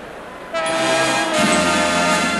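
A marching band's brass playing a loud held chord that comes in about half a second in, after a brief dip in the music; a low held bass note joins partway through.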